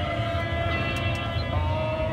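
A sustained chord of several steady tones, played through the car's speakers from the Pioneer AVH-X2800BS head unit, over a low steady rumble; the chord shifts in pitch about one and a half seconds in.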